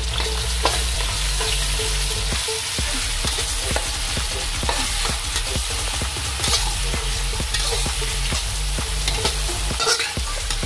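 Shallots, potato chunks and ginger-garlic paste sizzling in hot oil in a wok, stirred with a metal spatula that scrapes and clicks against the pan many times over the steady sizzle.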